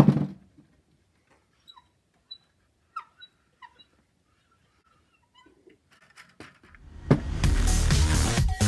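A single knock, then a few faint, short squeaks that fall in pitch. About seven seconds in, a loud, dense, distorted electric sound takes over as the strings of a homemade plank instrument with a coil pickup are played.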